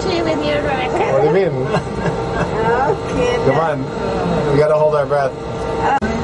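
People talking and chattering inside a small aerial tram cabin, with a steady hum underneath.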